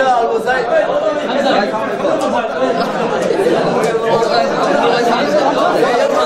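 A crowd of men talking at once: loud, unbroken overlapping chatter with no single voice standing out, as guests greet one another.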